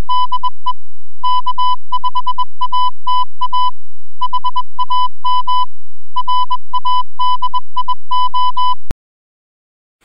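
Morse code beeping: a single steady high tone keyed in quick short and long beeps, in groups with brief pauses between them. It stops near the end with a sharp click.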